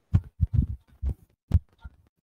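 A few short, low, muffled thumps in quick succession. The sharpest come near the start and about one and a half seconds in.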